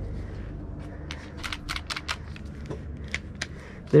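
Light clicks and rattles of a clear plastic airsoft pistol being handled and turned over in gloved hands while its safety is searched for, with scattered sharp ticks from about a second in over a low steady hum.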